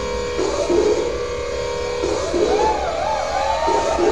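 Electronic music: sustained synthesizer tones over a steady low bass, with a wavering, warbling line coming in about two seconds in.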